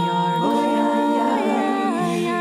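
Unaccompanied singing voices holding long, sustained notes with no words, the pitch shifting after about a second and a half.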